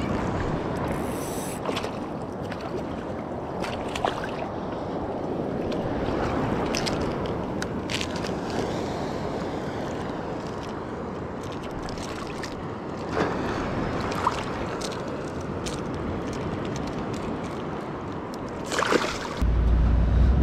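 Surf washing and sloshing around a wading angler: a steady rushing of water with a few sharp clicks and splashes. Near the end it gives way to a low vehicle rumble.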